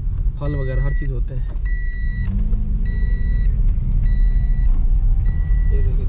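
Inside a moving car: steady low engine and road rumble, with the car's electronic warning chime beeping five times at about one beep a second.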